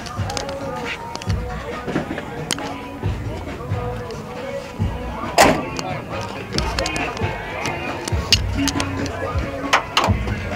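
Background music with voices in the distance, and a sharp knock about five and a half seconds in.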